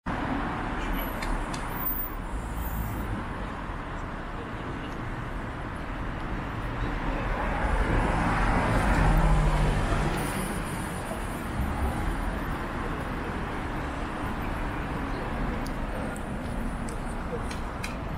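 City street traffic noise at an intersection. A vehicle drives past close by, swelling to its loudest about nine seconds in and fading by ten.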